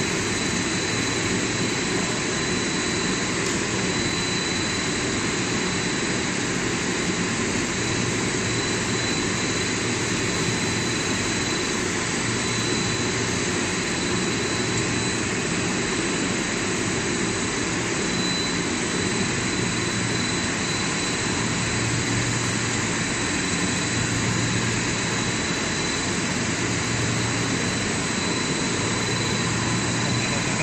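Steady, unbroken machinery noise from a rubber hose extrusion production line, with a thin high whine running through it.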